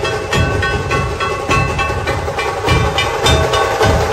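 Live street band music, loud: held, horn-like high notes over a dense drum beat with sharp percussion hits.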